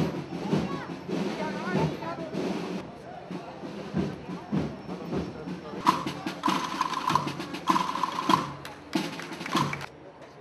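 A procession band playing, with drum beats, mixed with crowd voices. About six seconds in, the sound grows louder and shriller, with held high tones, until it drops away at the end.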